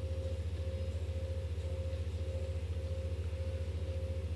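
Steady low electronic drone with one held mid-pitched tone, unchanging throughout: the soundtrack of the music video playing back at low level.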